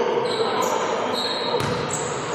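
Basketball play echoing in a sports hall: several short, high sneaker squeaks on the court floor and a sharp ball knock about one and a half seconds in, over players calling out.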